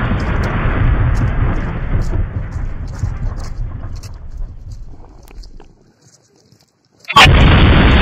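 Wind buffeting the phone microphone: a loud, low rumbling noise. It fades out over the first five seconds or so, stops for about a second, then cuts back in suddenly with a click near the end.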